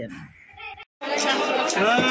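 A voice trails off, then after an abrupt break about a second in, loud overlapping chatter of many voices starts.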